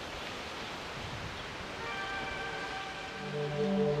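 Soft background music with sustained notes over a steady hiss; the music grows fuller about two seconds in, and low notes come in near the end.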